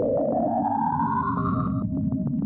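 Cassini's recording of Saturn's radio emissions made audible: an eerie whistling tone that glides steadily upward in pitch and cuts off abruptly near the end, over a low rumbling hiss.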